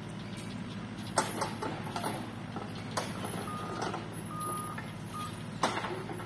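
A heavy vehicle's engine runs steadily. In the second half there are three short high beeps of a warning alarm, two longer and one brief, and a few sharp knocks sound through it.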